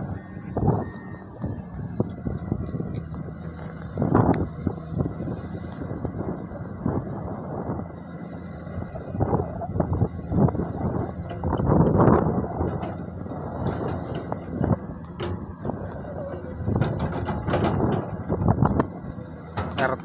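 Komatsu PC210 hydraulic excavator's diesel engine running steadily while its bucket shapes and drops soil along an earth embankment. Irregular louder rough surges come a few times.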